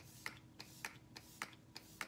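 Makeup setting spray misted from a pump bottle onto the face: a quick run of short spritzes, about three a second.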